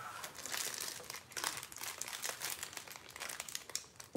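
Wrapping material crinkling and rustling as it is handled, with many small irregular ticks.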